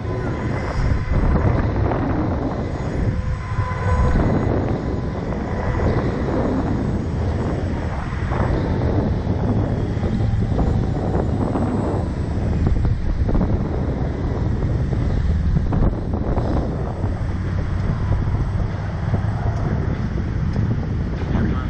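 Steady rush of wind buffeting the onboard camera's microphone as the Slingshot ride capsule swings through the air.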